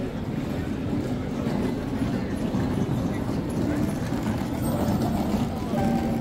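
Busy city street ambience: indistinct voices of passers-by over a steady low rumble.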